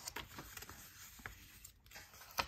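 Faint handling sounds: a few light taps and soft paper rustles as a hand moves around inside a cardstock folder.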